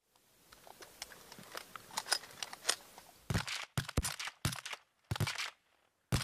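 Crunching of packed snow underfoot: small crackles that build over the first few seconds, then several heavier crunches from about three seconds in.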